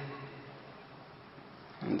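A pause between phrases of a man's spoken lecture: faint steady room noise, with his voice trailing off at the start and his next word beginning near the end.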